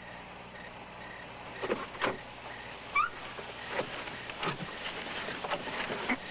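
Car sounds: a steady low hum with a few scattered knocks and clicks, as of a car stopping and its door being opened, and a brief chirp about three seconds in.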